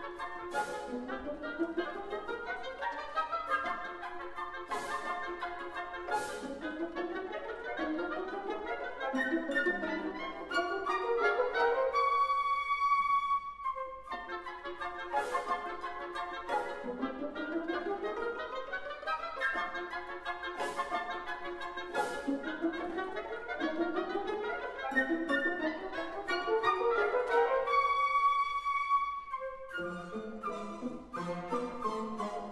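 Orchestra playing a classical passage of overlapping rising runs punctuated by short sharp accents, each build-up ending on a held high note, about twelve seconds in and again near the end; the phrase is repeated once.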